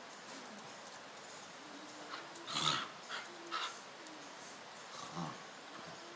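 Two dogs play-fighting, giving a few short growling snarls, the loudest about two and a half seconds in.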